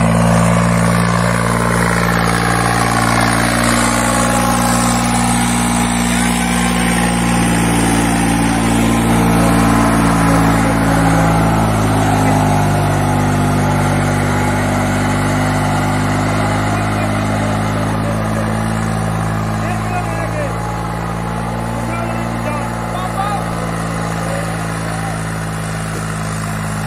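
Tractor diesel engine running steadily under load while pulling a disc harrow through dry soil, a low drone that eases slightly near the end.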